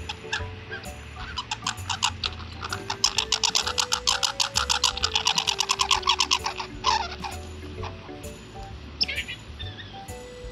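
Light background music with a steady melody and bass. Over it a red squirrel gives a rapid chattering rattle of sharp clicks, about nine a second, loudest from about three to seven seconds in. A short falling squeak comes near the end.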